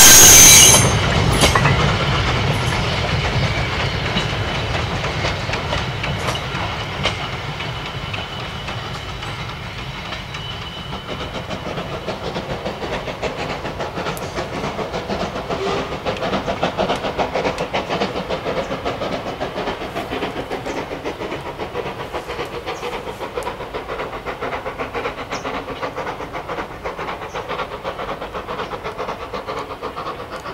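A steam locomotive's whistle cuts off about a second in, then the goods train rolls away: wagons clattering over the rail joints and the engine working hard. The sound fades over the first ten seconds and settles into a steady, rhythmic beat.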